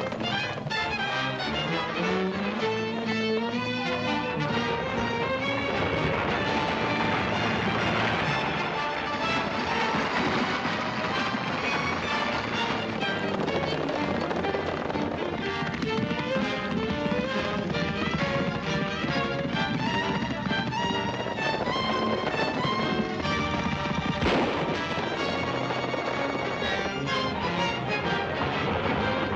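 Orchestral film-score chase music with rising melodic runs. Sharp gunshot cracks sound among it, the loudest one near the end.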